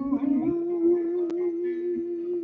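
A man singing a long, wordless held note at the close of a slow ballad. The pitch steps up once about half a second in and is then held steady.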